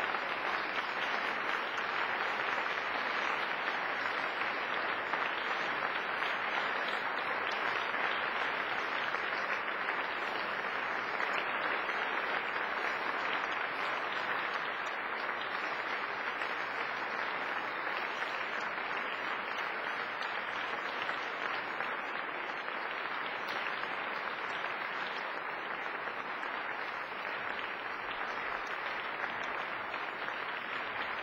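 Concert audience applauding: dense, even clapping that eases slightly near the end.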